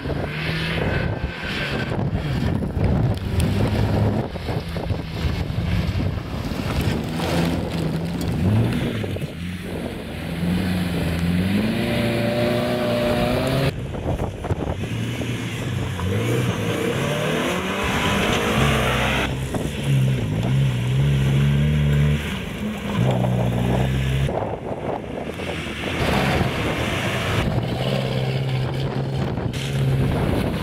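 Engines of old rally cars being driven hard on a loose gravel course, one car after another, with tyre and wind noise underneath. The revs climb steeply about twelve seconds in, and the sound changes abruptly several times as it switches from car to car.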